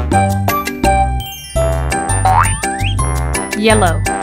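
Bouncy children's background music with a steady beat. A cartoon boing sound effect rises in pitch a little past the middle.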